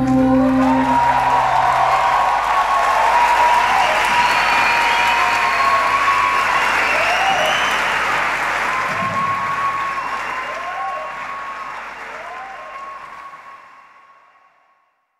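Theatre audience applauding and cheering with shouts and whistles at the end of a live song, the band's final chord dying away in the first two seconds. The applause fades out near the end.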